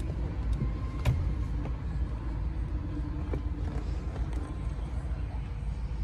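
Steady low rumble inside a car's cabin, with a single sharp click about a second in.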